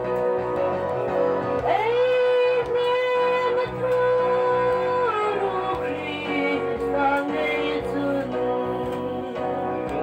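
A woman singing into a handheld microphone over instrumental accompaniment, holding one long note from about two seconds in until about five seconds, then stepping down in pitch.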